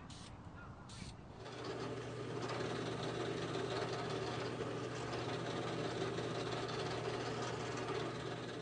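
Two short hisses from an aerosol can of oil-based spray varnish, then a drill press motor running steadily as its bit drills a hole into a mahogany drawer pull.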